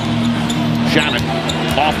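A basketball being dribbled on a hardwood court, with steady low background music underneath through about the first second.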